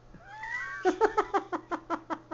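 High-pitched baby vocalising: a rising squeal, then a quick run of short 'ah' sounds, about six a second.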